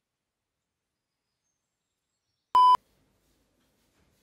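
Silence, then about two and a half seconds in a single short, loud electronic beep: one steady mid-pitched tone lasting about a fifth of a second, which starts and stops abruptly.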